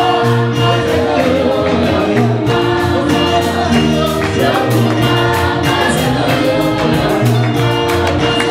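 A congregation singing a Lingala gospel worship song in chorus over instrumental backing, with a steady beat.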